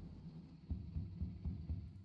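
Low, dark background music from an online slot game, a pulsing rumble with a few faint ticks as the reels turn and stop.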